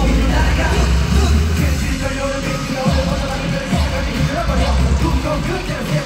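Live K-pop concert music played through an arena sound system and recorded from the crowd, with a heavy bass beat that pulses in and out under a sung vocal line.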